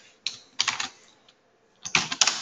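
Typing on a computer keyboard: a quick run of keystrokes in the first second, a single key about a second later, and another run starting near the end.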